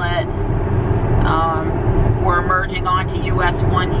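Steady road and tyre noise inside the cabin of a Tesla Model X, an electric car with no engine sound, cruising at highway speed. A voice talks over it from about a second in, with a short gap about two seconds in.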